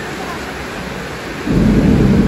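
Steady rain hiss, then about a second and a half in a sudden loud low rumble of thunder that carries on and slowly fades.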